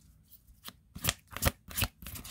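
A deck of tarot cards being shuffled by hand. After a quiet first half-second, the cards slap together in a quick run of crisp strikes, roughly three loud ones a third of a second apart.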